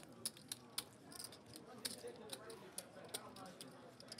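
Light, irregular clicks of clay poker chips being handled at the table, a dozen or so short sharp ticks over faint background chatter.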